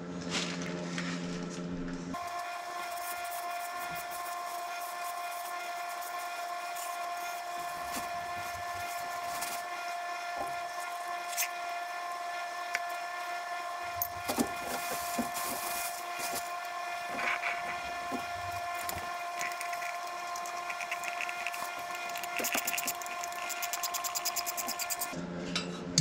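Rubbing, scraping and small knocks of gloved hands and a rag working on a metal fuel oil filter canister, over a steady hum with a clear tone. Near the end comes a quick run of small regular clicks.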